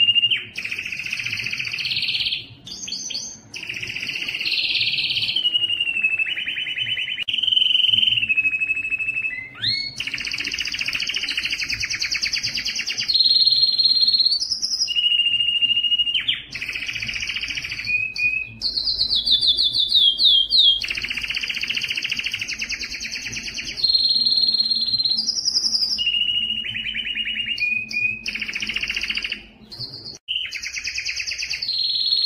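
Male canary singing a long, nearly unbroken song: runs of rapid rolling trills alternate with short steady whistled notes and quick glides, with only brief pauses between phrases.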